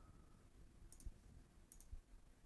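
Two faint computer mouse clicks, each a quick double tick of the button pressed and released: one about a second in, one near the end.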